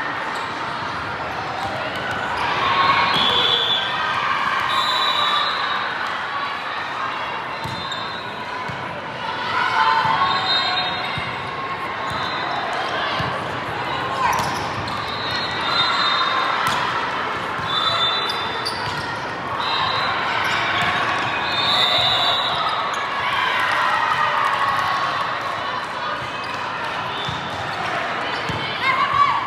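Large indoor sports hall during a volleyball match: many voices talking and calling over one another, with scattered thuds of the ball being served, played and bouncing on the court.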